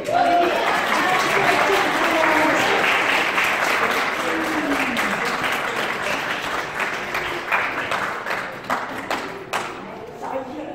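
A small crowd applauding: dense clapping at first, thinning to a few scattered claps before it stops near the end.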